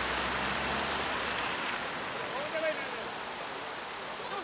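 Rain falling steadily, a continuous even hiss that fades slightly, with faint voices about halfway through.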